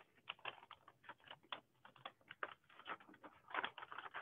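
Origami paper being opened out and creased by hand: faint, irregular crinkles and taps, busier near the end.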